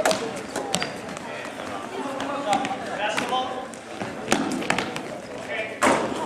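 A basketball bouncing on a gym's hardwood floor during play, a handful of sharp, irregular thuds with the loudest near the end, echoing in the hall. Spectators' voices chatter faintly underneath.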